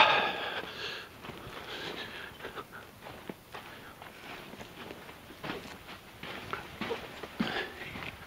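Scattered footsteps and scuffs on loose rock and dirt, with a person's soft breathing, while crouching through a low cave entrance. A laugh trails off at the very start.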